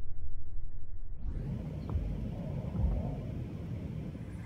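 Steady low outdoor rumble on the camera microphone, thin at first and becoming fuller and brighter about a second in.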